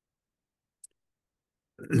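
Near silence, with one faint, very short click about a second in.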